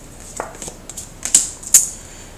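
Tarot cards clicking and snapping as a card is drawn from the deck and laid on a wooden table, a run of light clicks with two sharper snaps close together about a second and a half in.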